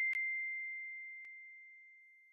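A single high bell-like chime, struck just before, ringing out as one pure tone and slowly fading away, with two faint clicks over it.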